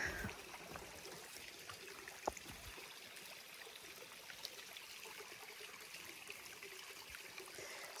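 Faint, steady trickle of a shallow mountain stream running over rock slabs, with one short tick a little over two seconds in.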